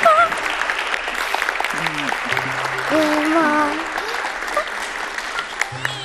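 Studio audience applauding, thinning out and growing quieter toward the end, with music and a few voices over it.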